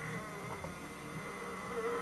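A steady buzzing drone with a thin high whine held throughout, and no speech.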